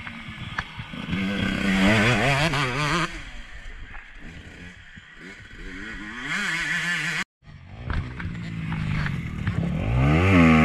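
Motocross dirt bike engines revving up and down through the gears as they ride the track: loudest about one to three seconds in, then fading. A brief cut to silence comes a little past the middle, after which another bike's engine revs louder and louder as it nears.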